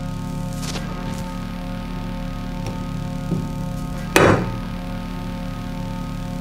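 Background music with steady held notes. About four seconds in, a single short knock: a large glass jar being set down over a candle onto a plate.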